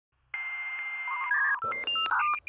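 Electronic intro sound effect: a steady buzzing tone for about a second, then a quick run of short touch-tone style beeps stepping between different pitches.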